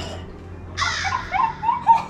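A high-pitched voice squealing, starting about a second in, in a quick run of short cries that slide up and down in pitch. The loudest cry comes near the end.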